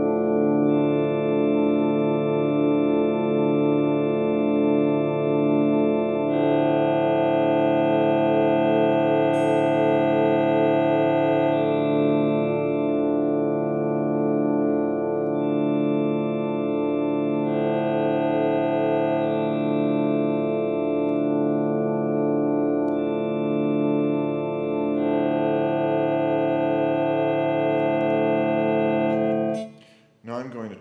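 Acoustic guitar chord held in continuous sustain by the Vo-96 Acoustic Synthesizer, which changes how the strings themselves vibrate rather than processing the signal. Several overtones pulse in a slow, even rhythm, and the tone colour switches abruptly about four times as the unit's pads are pressed, before the sound cuts off just before the end.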